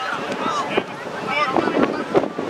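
Wind buffeting the microphone over scattered shouts and calls from rugby players and spectators across the field.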